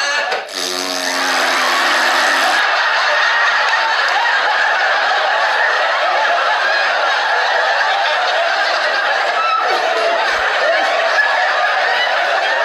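Sustained loud laughter, a studio audience laughing continuously with a man's laughter mixed in. A short steady pitched tone sounds under it for about two seconds near the start.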